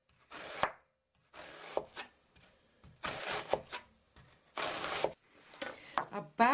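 Chef's knife slicing a red onion into thin slices on a wooden cutting board: about five slow strokes, each a crisp rasp through the onion ending in a tap of the blade on the wood.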